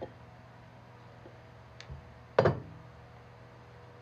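Parts being handled on a workbench: a faint click, then one sharp knock about two and a half seconds in, over a steady low hum.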